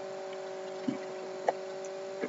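A pause in speech that leaves only background hum from the recording setup: a few faint steady tones over a light hiss, with two small clicks about a second and a second and a half in.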